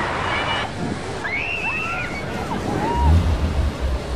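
River water splashing and churning as people thrash about in it at the foot of a water slide, with shrill voices and shouts over the splashing. Wind buffets the microphone near the end.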